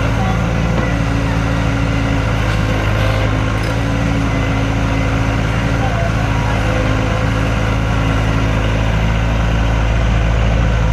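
Kobelco tracked mini excavator's diesel engine running steadily under load as the machine digs and swings its bucket of soil.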